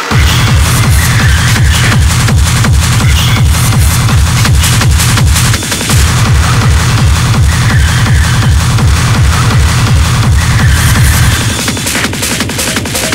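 Hard techno (Schranz) DJ mix: a fast, steady four-on-the-floor kick drum under dense, noisy percussion. The kick drops out for a moment right at the start and again about five and a half seconds in, and the low end thins near the end.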